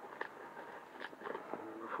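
Scissors snipping through packing tape on a cardboard box: a few short, separate clicks.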